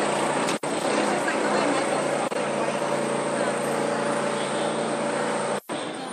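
Street traffic noise with a steady engine drone from a motor vehicle, a low hum with a higher tone above it, which cuts out briefly near the end.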